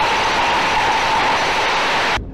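Bottle-filling line machinery running: a steady hiss with a faint steady whine.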